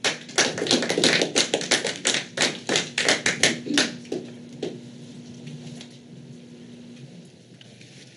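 Scattered applause from a small audience: a few seconds of irregular clapping that thins out and stops about four seconds in.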